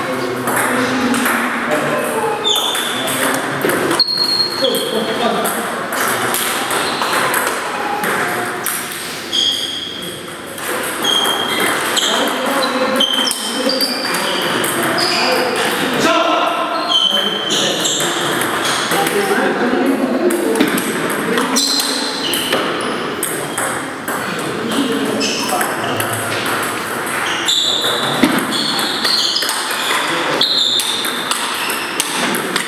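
Table tennis balls striking tables and bats: a steady scatter of short, high pings from the rallies in the hall, over background chatter.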